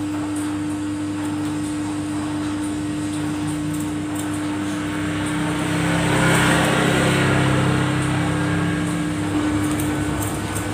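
Steady machine hum with a constant low tone, swelling to a louder rush for a few seconds in the middle. Over it come faint, quick snips of barber's scissors cutting hair held on a comb.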